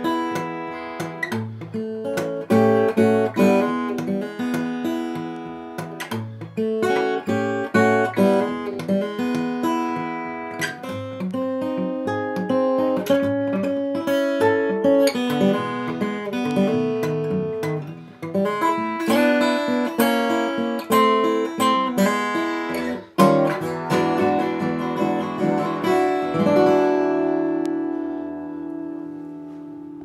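1999 Webber mahogany OM acoustic guitar played fingerstyle as a solo, a melody over picked bass notes. It ends on a chord that rings out and fades over the last few seconds.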